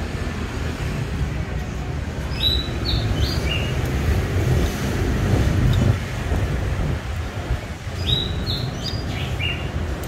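A small caged bird chirping two short phrases of about four quick notes each, several seconds apart, each phrase stepping down in pitch. Under it runs a steady low rumble.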